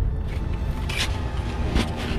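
Snow shovel and ice axe digging into packed snow: a few short scraping strokes over a steady low rumble.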